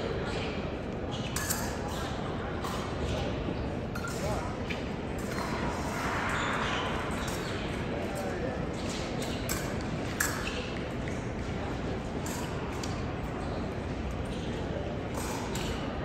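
Busy fencing hall ambience: a steady background murmur of voices in a large, echoing room, with scattered short metallic clicks and pings, one louder click about ten seconds in.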